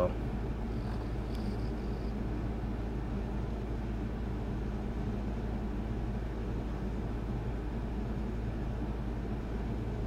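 A steady low background hum with no distinct sounds: room tone.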